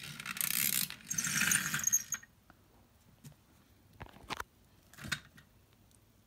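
Toy school bus and plush toys being handled and pushed along a wooden floor: about two seconds of rustling and rattling, then a few scattered clicks.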